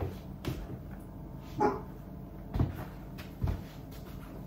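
Soft footsteps in trainers on a wooden floor, four light steps spaced about a second apart, with one brief pitched sound near the middle.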